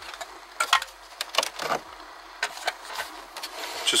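Scattered light clicks and taps of hands handling a car's plastic dashboard switch panel, irregular and a fraction of a second apart.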